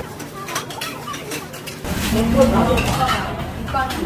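Metal chopsticks clicking lightly against a ceramic bowl and dishes a few times in the first couple of seconds, followed by a woman talking.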